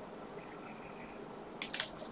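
Scissors cutting through the foil wrappers of a stack of trading-card booster packs: quiet handling at first, then a quick run of short, sharp snips near the end.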